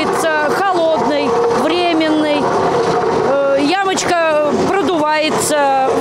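A woman talking throughout, over a steady engine hum from road-repair machinery.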